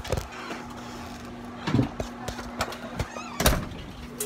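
Handling noise from a handheld phone being jostled and rubbed against clothing, with scattered knocks and thumps; a dull thud comes near the middle and the loudest knock about three and a half seconds in.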